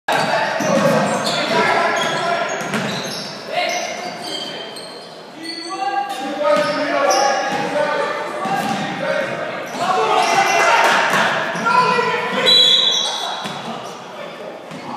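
Basketball being dribbled on a wooden gym floor with short high squeaks, under players and spectators calling out, all echoing in a large hall.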